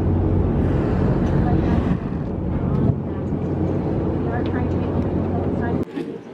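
Tour boat's engine running with a steady low drone, with faint passenger voices in the background; the drone drops away abruptly near the end.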